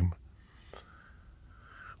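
A man's speech ends just after the start, then a quiet pause with a faint mouth click just under a second in and a soft in-breath that builds toward the end.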